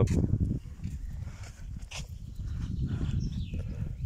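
Wind buffeting a phone microphone, a gusting low rumble, with a few light clicks of handling.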